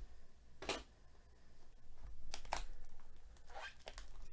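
Trading cards and their cardboard-and-foil pack sliding and rustling in gloved hands as a Topps Museum Collection pack is opened: a handful of short swishes, two close together about two and a half seconds in being the loudest.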